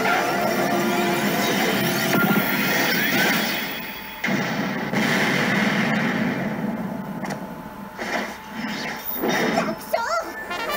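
Madoka Magica 2 pachislot machine playing its battle-effect audio: game music with crashing hit sounds. The sound dips briefly about four seconds in, comes back suddenly with a hit, and a few sharp hits come near the end.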